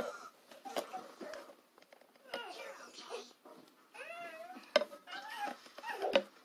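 High-pitched calls rising and falling in pitch, heard several times, with a few sharp taps between them, the loudest right at the start.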